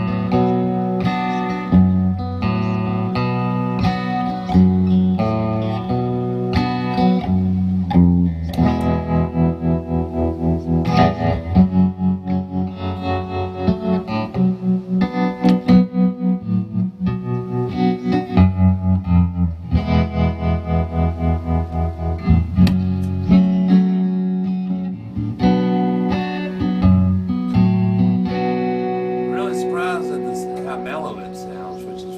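Steel-body D&C Metalcaster Gambler electric guitar with P90 pickups, played through an amplifier: picked notes and chords, with a stretch of quickly repeated picked notes in the middle, growing softer near the end.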